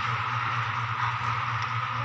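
A steady low hum with an even hiss over it, unchanging, with nothing else standing out.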